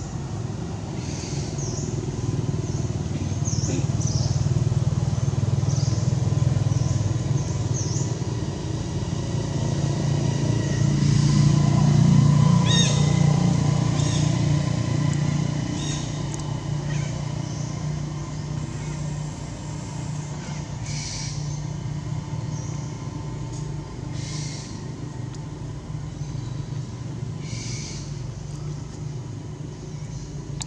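A motor vehicle's engine drones, growing louder to a peak about twelve seconds in and then fading away. Short high calls sound now and then over it.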